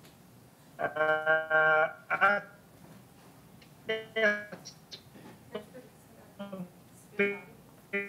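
A man's voice breaking up over a failing video-call connection: short, choppy fragments with gaps between them, some syllables smeared into held, robotic-sounding tones, so no words come through.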